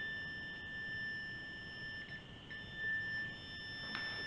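Handheld ghost-hunting detector sounding a steady high electronic tone, with a short break about two seconds in. The alarm stays on because the meter's reading won't drop.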